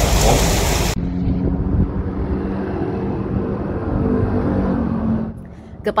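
After a second of steady room hiss, the sound switches abruptly to a muffled, steady motor-vehicle engine hum from street traffic. The hum fades down shortly before the end.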